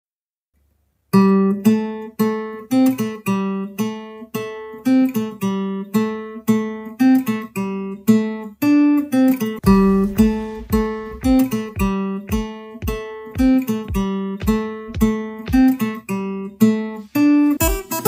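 Acoustic guitar fingerpicked, playing a repeating melody in even plucked notes that starts about a second in. About halfway through, a deep thud joins on each beat.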